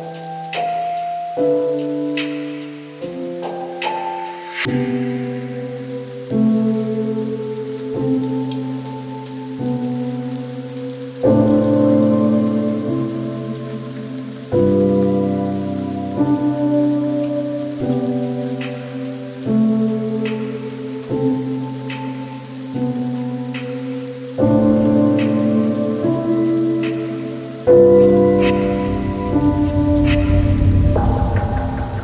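Slow, soft lo-fi piano chords, a new chord about every one and a half to two seconds, each note dying away, over a steady background of rain.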